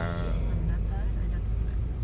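Steady low rumble of a car driving, heard from inside the cabin. A drawn-out spoken syllable trails off in the first half-second.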